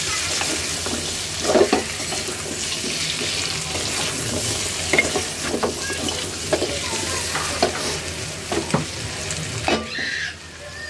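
Chicken feet and potato pieces sizzling in oil in an aluminium pot while a spatula stirs them. The spatula scrapes and knocks against the pot now and then over the steady sizzle.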